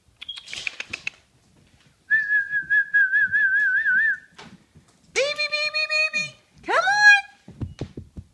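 Weimaraner puppies whining and yelping. There is a brief high squeak, then a high wavering whistle-like whine of about two seconds, then a longer whine a few seconds later and a short rising yip near the end.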